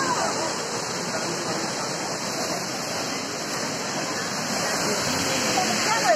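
A waterfall cascading over rocks, making a steady, even rushing noise, with voices talking over it at the start and near the end.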